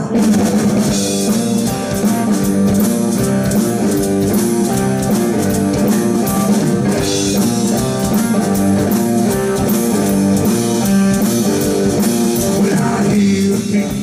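Live blues-rock band playing an instrumental passage between vocal lines: electric guitar and drum kit over a steady beat, loud and continuous.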